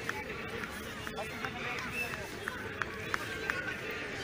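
Children's voices calling and chattering outdoors, with a few short sharp ticks scattered through.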